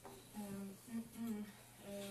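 A person's voice making a few short hummed or murmured sounds without clear words.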